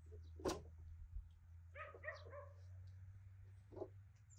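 A dog whining softly in a few short, high, pitched notes about two seconds in. A single sharp knock about half a second in is the loudest sound.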